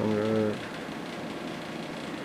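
A man's voice holding a brief level-pitched hesitation sound for about the first half-second, then only a steady faint background noise.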